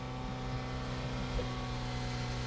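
Steady low hum of a car's running engine heard inside the cabin, even and unchanging.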